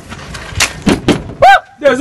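A person's short, loud vocal exclamation about one and a half seconds in, preceded by a few sharp clicks over low background noise.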